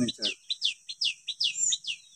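A small bird calling a quick run of short, high chirps, each sliding downward, about five a second, over a steady high-pitched hiss of insects.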